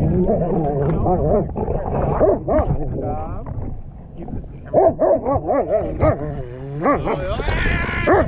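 Bernese mountain dog yipping and whining close to the microphone in a run of short calls that rise and fall in pitch, with a brief lull about four seconds in. A low steady rumble runs underneath.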